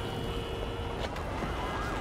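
An emergency-vehicle siren sweeping quickly up and down in pitch over a steady rumble of city traffic, the siren coming in about halfway through.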